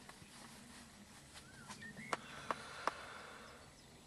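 Quiet outdoor ambience with a couple of short bird chirps, and three sharp clicks a little after two seconds in.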